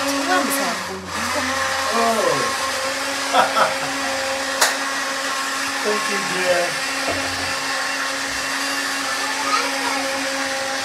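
Electric blender motor running steadily at one pitch, a continuous whirring hum. A single sharp click about four and a half seconds in.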